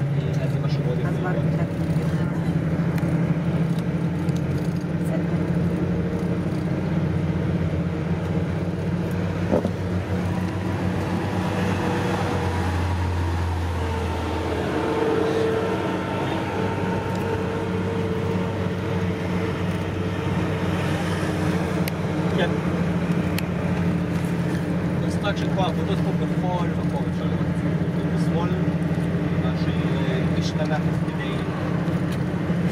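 Vehicle engine and road noise heard from inside the cabin while driving, a steady low drone. A deeper hum swells for about two seconds halfway through.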